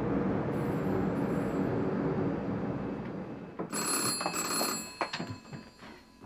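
A steady rumbling noise for the first half, then a desk telephone's bell rings once, a ring of about a second, just past the middle.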